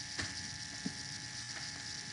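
Pen writing on paper: faint scratching strokes and a couple of light ticks over a steady background hiss.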